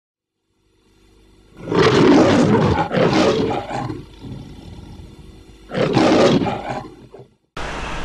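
The MGM logo's lion roar: a lion roars three times, the first two close together and the third after a pause of about two seconds. Near the end the sound cuts abruptly to steady street noise.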